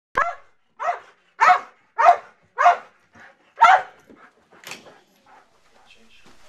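A Belgian Malinois-type working dog barking while held back on its leash: six loud barks in quick succession, about one every half second, then a fainter bark and a few weaker ones near the end.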